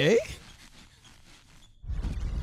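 A spoken "okay" at the start, then a faint lull, and just before the end a loud electronic whirring starts up on the cartoon's soundtrack.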